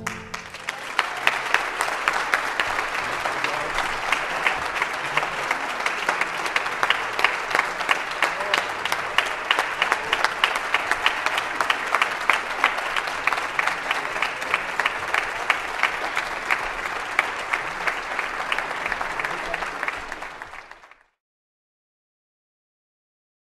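Audience applauding, a dense, steady clapping that fades and then cuts off about a second before the end.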